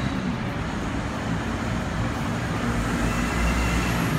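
Steady city road-traffic noise with a low rumble, which grows slightly louder near the end.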